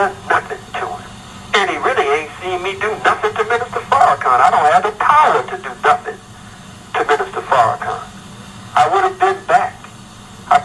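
Only speech: a voice talking in phrases with short pauses.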